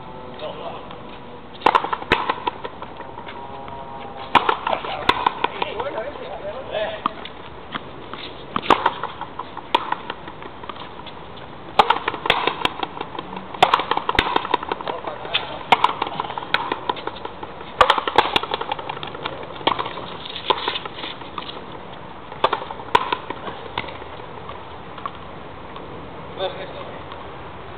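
Frontenis rally: a hard ball cracks off the rackets and smacks against the front wall again and again, irregularly every second or few, each hit ringing briefly off the high fronton walls.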